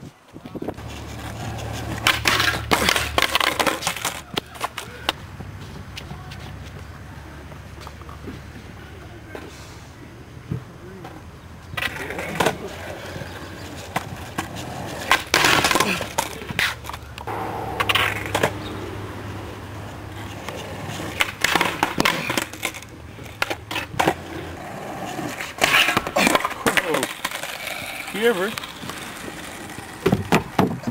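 Skateboard wheels rolling on asphalt, broken about six times by bursts of loud clatter as the skater tries tricks on a low flat rail: the board popping, scraping along the rail and slapping or rattling back onto the pavement.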